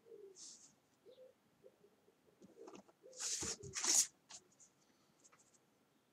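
Graphite pencil drawn along a plastic ruler on paper: two quick, scratchy strokes about three seconds in, with a few faint taps around them.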